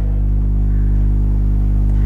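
Background music bed of steady, sustained low tones, holding without a break.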